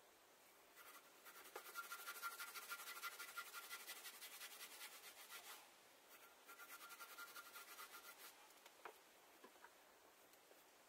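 Quiet, rapid back-and-forth scrubbing on a stove top, cleaning it ahead of blacking. It comes in two bouts, the first about four seconds long and the second about two, with a thin steady squeal running through the strokes. A few light ticks follow near the end.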